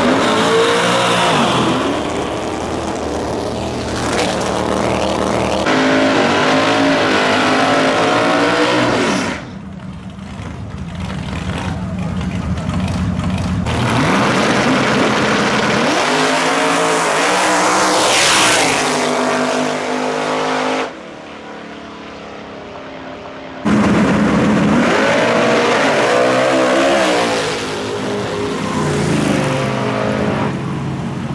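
Drag-racing cars launching hard from the line, engine pitch rising again and again as they pull through the gears. Several runs follow one another, each starting and stopping abruptly.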